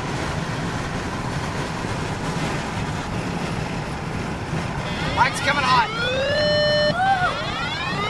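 Steady road and wind noise inside a moving vehicle. About five seconds in, a loud pitched sound joins it, sweeping up and down, holding a level note for about half a second, then rising again to the end.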